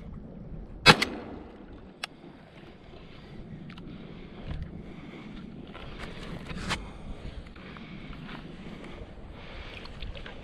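Water washing and sloshing against a plastic sit-on-top kayak as the person aboard shifts and moves it. There is a sharp knock about a second in, the loudest sound, and a fainter click about a second later.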